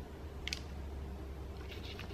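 Quiet handling of a small metal pendant tray as fingertips press an acrylic paint skin into it: a low steady hum with one short sharp click about half a second in, and a few faint ticks near the end.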